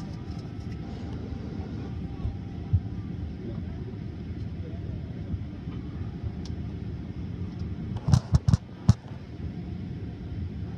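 Steady low vehicle rumble heard from inside a car's cabin, with four sharp knocks in quick succession about eight seconds in.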